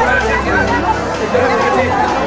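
A crowd of adults chattering and calling out at once, many voices overlapping, with background music underneath.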